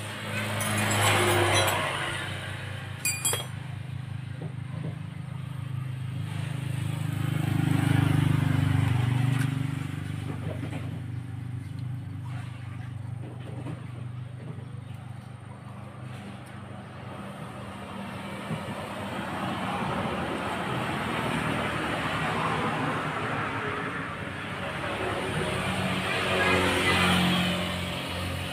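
Passing road traffic, including a motorcycle: engine sound swelling and fading several times, loudest about eight seconds in and again near the end. A sharp click about three seconds in.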